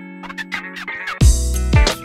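Background music: sustained pitched notes, then a deep bass beat comes in a little past halfway, hitting about twice a second.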